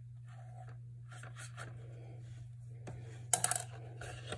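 Dry paintbrush dragged across paper in a series of short, scratchy strokes: dry-brush painting, the nearly dry bristles catching on the paper's texture. A little after three seconds a loud crackle of the paper sheet being picked up.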